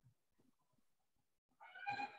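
Near silence, broken near the end by one short, faint, high-pitched call.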